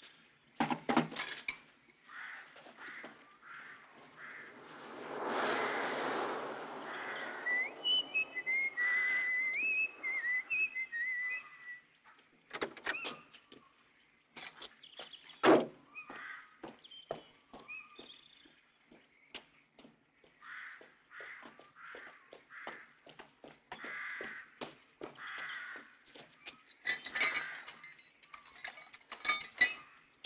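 Scattered outdoor knocks, clicks and footsteps, with a swell of rushing noise about five seconds in. Someone whistles a short stepped tune from about eight to twelve seconds in. A single sharp knock about fifteen seconds in is the loudest sound, and faint bird calls are heard now and then.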